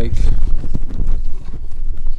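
Handling noise from a handheld camera being swung around: a low rumble with irregular knocks and clunks.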